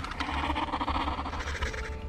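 Documentary background music with a low, pulsing beat, overlaid for the first second and a half or so by a rough, raspy sound effect.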